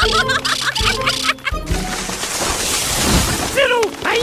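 Cartoon background music with a beat under a quick run of short high chirping squawks from the animated parrots. This gives way to a loud rushing noise lasting about two seconds, and a voice starts near the end.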